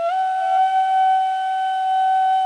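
Background music: a flute starts a note with a short upward slide and then holds it steady.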